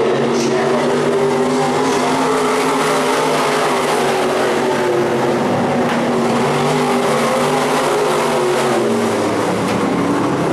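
Several sport modified dirt-track race cars running laps together, their engines overlapping in a steady drone with small rises and falls in pitch.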